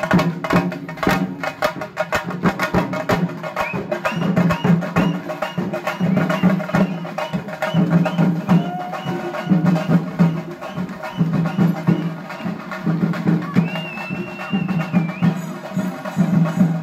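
Chenda melam: chenda drums beaten in a fast, dense, unbroken rhythm. A high held tone sounds briefly over the drumming near the end.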